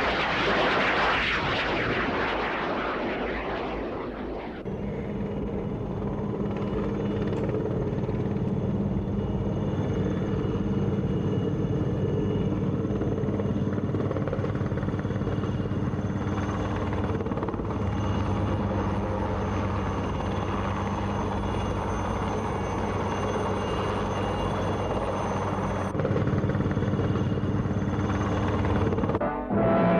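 A propeller aircraft's engine rushing as it lands on a carrier deck for the first four seconds or so. Then, after a sudden change, a helicopter's steady turbine whine and rotor, a little louder near the end.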